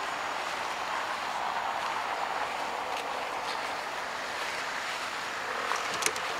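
Water running along a shallow concrete channel, a steady rushing hiss.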